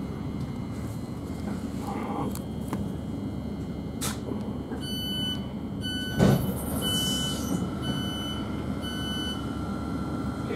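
Thameslink Class 700 electric train standing at a platform with a steady low rumble. About halfway through, a run of five evenly spaced door beeps starts, about one a second. Just after the second beep there is a sharp thud and a short hiss of air as the doors open.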